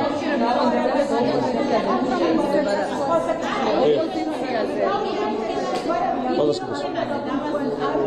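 Speech only: a man speaking Georgian at a press briefing.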